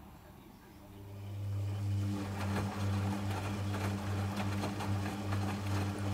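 Logik L712WM13 washing machine's drum motor starting about a second in and turning the drum for the final rinse: a low hum that swells about one and a half times a second, with water sloshing and wet laundry tumbling.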